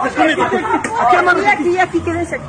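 Several people talking and calling out at once, their voices overlapping in a tense, excited babble.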